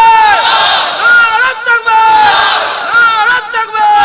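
A crowd of voices chanting loudly in long, high, wavering phrases that fall away at their ends.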